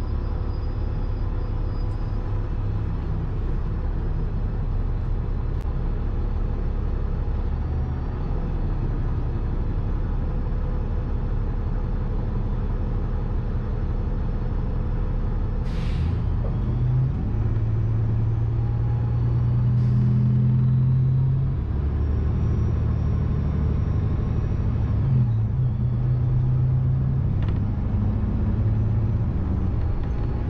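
Interior of a city transit bus under way: steady engine and road rumble, with the engine's low note getting stronger about halfway through and a brief sharp hiss or click at that point.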